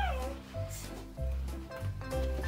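Background music with held melody notes over a pulsing bass. In the first moment a short, high, gliding, meow-like cry falls away.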